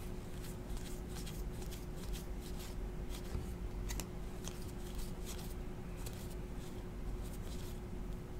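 A stack of hockey trading cards being flipped through by hand, each card slid off the front of the pile, giving a run of quick, irregular soft clicks and flicks. A steady low hum sits underneath.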